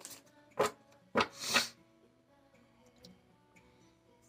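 A deck of tarot cards being shuffled by hand: a few short swishes in the first two seconds, the longest at about a second and a half in. Faint background music runs underneath.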